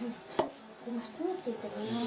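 A single sharp knock a little under half a second in, then several women's voices talking as they work dough by hand at a table.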